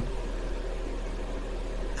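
A pause in speech holding steady background noise: an even hiss over a constant low hum, the microphone's room tone.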